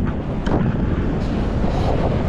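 Wind buffeting the camera's microphone in flight under a tandem paraglider: a steady low rumble.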